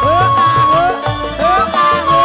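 Live campursari instrumental passage: a bamboo suling flute holding long high notes with small slides, over electronic keyboard and regular low kendang hand-drum strokes.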